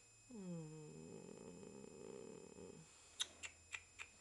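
Dog giving a long, low, contented groan while being stroked. The groan falls in pitch and then holds for about two and a half seconds. Near the end a run of sharp clicks begins, about three a second.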